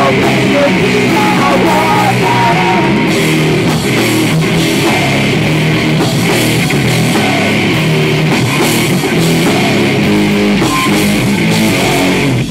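A live rock band playing loud: electric guitar and drums, with a singer's voice in the first couple of seconds.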